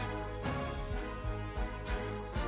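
Background music with sustained chords and a few drum hits.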